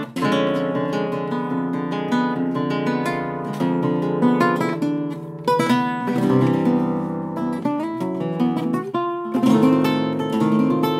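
Andalusian Guitars Barbero cutaway flamenco guitar being played: runs of plucked notes and ringing chords, broken by a few sharp strummed chords.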